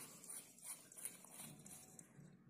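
Near silence, with a few faint scrapes from the bulb's screw base turning into the lamp socket.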